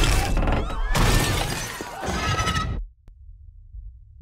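Film sound effects of a car crashing and tumbling, with shattering glass and screaming, loud and chaotic. About three seconds in it cuts off abruptly, leaving only a faint low rumble.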